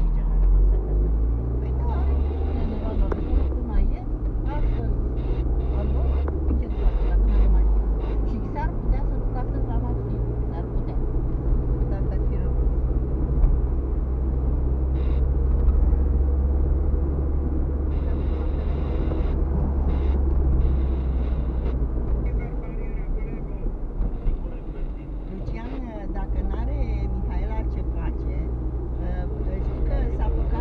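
Car engine and road noise heard inside the cabin while driving: a steady low drone and rumble that eases for a few seconds about two-thirds of the way through, then picks up again.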